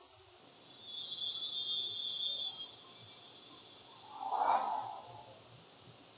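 Sound effects of a video-intro template playing back: a high, shimmering chime-like sound for about three seconds, then a short whoosh about four and a half seconds in.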